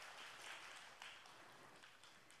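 Faint audience applause, a soft, even patter.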